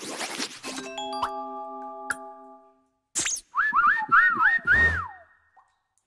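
Cartoon sound effects: a scratchy scribbling noise, then a ringing chord built up note by note. After a short gap comes a run of about five quick rising-and-falling whistle-like squeaks, the last one sliding down, over a low thump.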